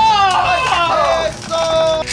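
A man's long excited cry of "oh!", falling in pitch over about a second, then a short steady held note near the end.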